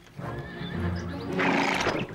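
Horse-drawn carriage arriving: a horse whinnies and hooves clip-clop over background music, with a short, loud, breathy burst near the end.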